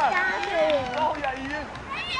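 Children's voices calling and shouting, several overlapping, during play on an outdoor football pitch.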